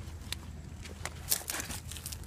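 Footsteps and scuffs on rocky ground: a few sharp crunches, the loudest bunched together about a second and a half in, over a low steady hum.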